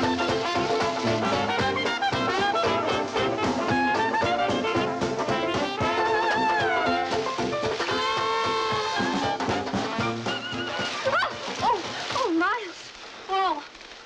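Brass-led jazz band music with trumpet and trombone, fast and busy, playing as a film score. About twelve seconds in it thins out into sliding tones and gets quieter.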